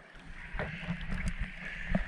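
Sea water sloshing and gurgling against a camera held at the surface as it comes up from underwater, with small sharp pops and splashes. It grows louder about half a second in, and the sharpest pop comes near the end.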